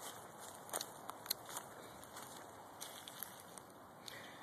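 Faint, scattered crackles and light clicks, with a few sharper ones in the first two seconds.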